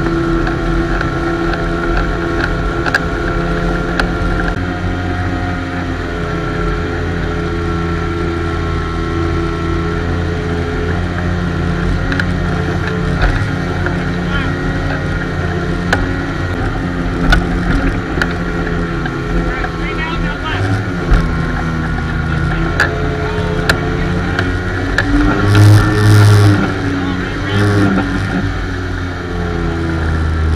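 Motorboat engine running steadily at speed while towing a tube, its pitch wavering a little, over the rush of the wake and wind. Scattered sharp knocks, and a brief louder burst near the end.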